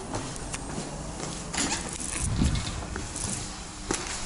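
Irregular footsteps and small knocks on a tiled stairwell landing, with a louder dull thump a little past halfway.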